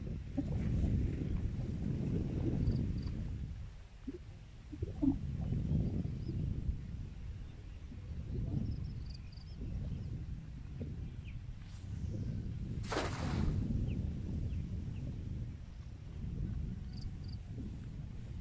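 Wind buffeting the microphone outdoors, in gusts that rise and fall, with a few faint high bird chirps. A brief rushing hiss comes about thirteen seconds in.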